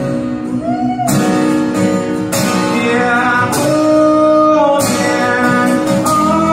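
A male singer with an acoustic guitar performing a country song live, holding long sung notes over chords strummed about once a second.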